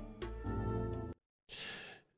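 The last bars of a TV show's intro jingle, with sustained tones, cut off suddenly just past a second in. After a brief silence comes a breathy inhale into a handheld microphone, just before the presenter speaks.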